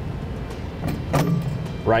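A few light metal clicks as a steel electric trailer brake backing plate is turned by hand on the axle's mounting studs, over a steady low hum.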